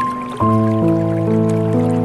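Slow, gentle piano music. A low chord is struck about half a second in, and new notes follow roughly every half second, over a faint trickle and drip of water.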